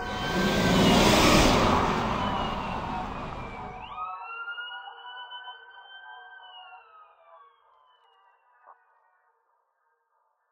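A siren wailing in slow rising and falling sweeps and fading out over about seven seconds. For the first four seconds a loud rushing noise lies under it, then cuts off abruptly.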